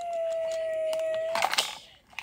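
A child's voice holding one steady hummed tone, a mouth-made hydraulic noise for a toy garbage truck. It breaks off about one and a half seconds in, with a short clatter of the plastic toy's parts.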